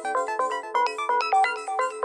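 Electronic dance music from a DJ mix: a fast synth arpeggio of short, bright stepped notes with falling high sweeps over it, and no kick drum or bass.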